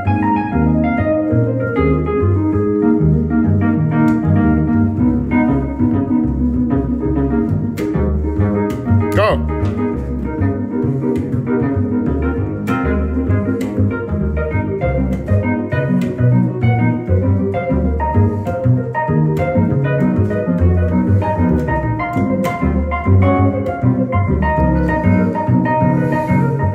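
Live jazz duo of plucked upright double bass and keyboard: the bass plays a steady pulse of low notes under sustained, organ-like keyboard chords and lines.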